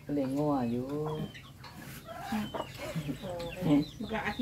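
Chickens clucking, with short high falling chirps, mixed with a man's voice.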